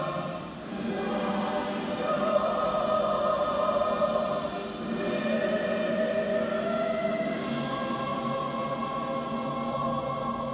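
Choir singing a slow anthem to instrumental accompaniment for a flag-raising ceremony, in long held notes and phrases, with a short break about half a second in.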